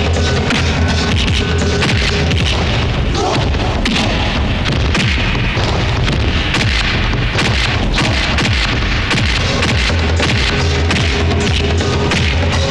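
Loud action-film background score with a heavy, driving beat, mixed with thudding impact sound effects for punches and kicks.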